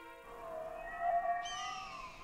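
Cartoon soundtrack: faint, eerie tones that waver and glide in pitch, with a falling sweep of higher tones about a second and a half in.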